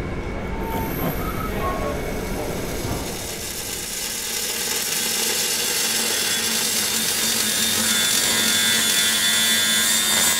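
Workshop machinery noise: a steady hiss with high whining tones that grows louder through the second half.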